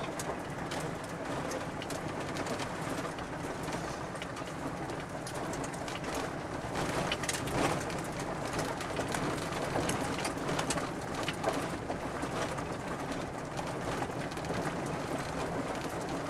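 Vehicle driving slowly along a rough dirt and gravel road: steady engine and tyre noise heard from inside the cab, with scattered light knocks and crunches from the road surface.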